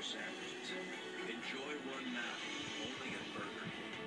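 A television playing in the room: indistinct speech over music.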